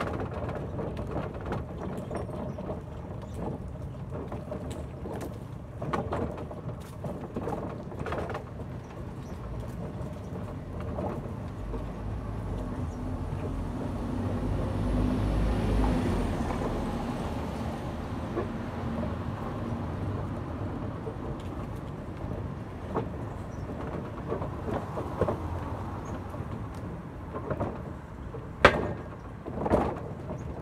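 Outdoor background noise with a passing vehicle whose low rumble swells to a peak about halfway through and fades away, plus scattered light clicks and one sharp knock near the end.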